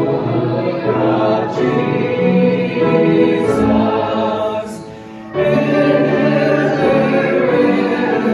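A group of voices singing a hymn together, held notes with a short breath between phrases about five seconds in.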